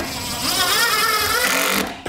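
Cordless DeWalt power driver running a screw into a wooden board. It gives a loud, steady whine that wavers and rises a little in pitch, then cuts off just before the end.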